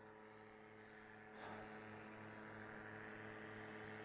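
Near silence: a faint steady hum with a soft hiss that grows slightly louder about a second and a half in.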